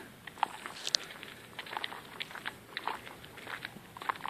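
Faint footsteps on a paved driveway, heard as a scatter of light, irregular ticks and scuffs.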